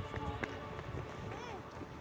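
Outdoor background: a steady low rumble with faint distant voices, and a few scattered light taps.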